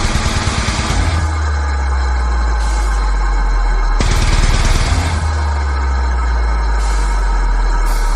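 Slam metal: heavily distorted, very low-tuned guitars and bass with drums, playing long low notes. Rapid chugging bursts about a second long come at the start and again about halfway through.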